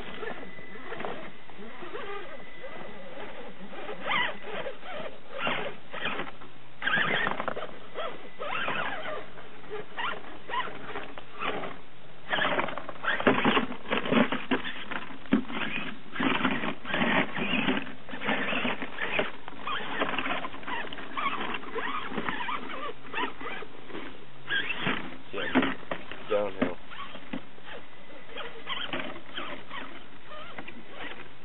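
Axial AX10 RC rock crawler climbing over rocks, its electric motor and gears whining in many short throttle bursts while the tyres and chassis scrape and knock on stone. The bursts are densest and loudest in the middle.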